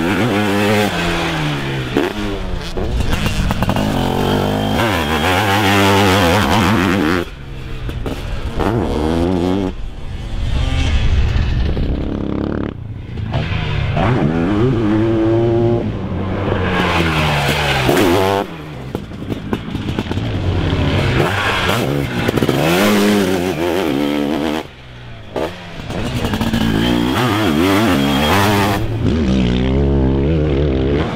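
Sidecarcross outfit's motocross engine revving hard, its pitch repeatedly climbing and falling through throttle changes and gear shifts. The sound drops away sharply several times between passes.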